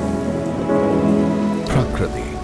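Rain falling, mixed with soft background music holding steady chords; a few sharper splashes come near the end.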